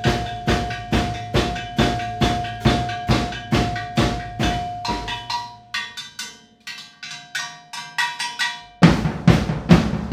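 Acoustic drum kit played with sticks: a steady beat of about two hits a second, with one drum's pitch ringing on under the hits for the first half. The playing thins out and quiets in the middle, then a loud low hit near the end starts heavier full-kit playing.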